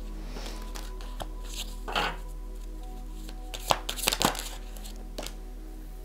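Soft background music with steady held notes, over the handling of a deck of oracle cards: a scattering of sharp clicks and rustles as the cards are shuffled and one is laid on the table, bunched around four seconds in.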